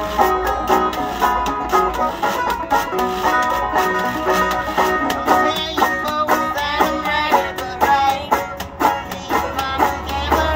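String band playing an instrumental: banjo picking and a metal-bodied resonator guitar over a steady washboard rhythm.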